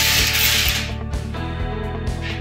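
Background music with steady tones and a regular beat, with a loud rustling, scraping noise during the first second that then stops.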